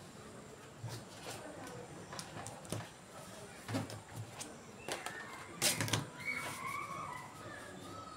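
A clear plastic French curve ruler being slid, knocked and repositioned on paper, with a marker pen drawing along it. The result is scattered clicks and scrapes, the loudest cluster a little past halfway.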